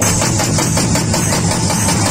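Loud live band music through PA speakers, carried by fast, heavy drumming with a deep low end and a rattling high percussion layer on top.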